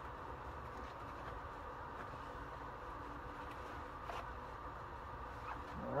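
Faint rubbing and light squeaks of a microfiber towel wiping polishing residue off a plastic headlight lens, over a steady low background noise.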